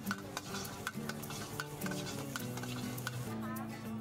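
A metal ladle scraping and clanking against a hot wok in quick repeated strokes as food is stir-fried, with a sizzle. Background music plays underneath.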